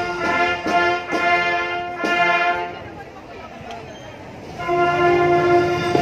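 Marching band brass section playing loud held chords with sharp accents, breaking off for about two seconds in the middle before the band comes back in on a long sustained chord.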